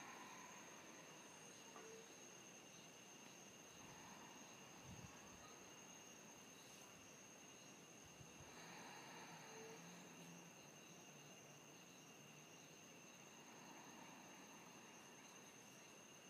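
Near silence, with a faint, steady, high-pitched insect drone running throughout.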